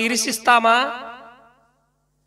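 A man preaching in Telugu through a microphone, his phrase trailing off; the last part is silent.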